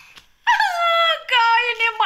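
A woman wailing in a drawn-out, high-pitched cry that starts about half a second in, falls in pitch and is then held lower with a brief break.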